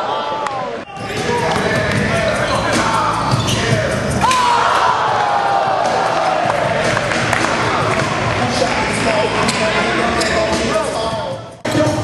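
Basketball bouncing on a gym floor, with players' and onlookers' voices in an echoing gym hall.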